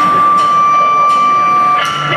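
A single steady high note held on stage for nearly two seconds, with faint clicks about three-quarters of a second apart, as a live rock band is about to start a song.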